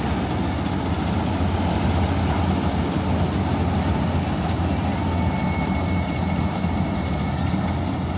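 Malkit 997 combine harvester running steadily under load as it cuts and threshes a standing grain crop: a constant low engine drone over the rushing noise of the machine. A faint thin whine joins about five seconds in.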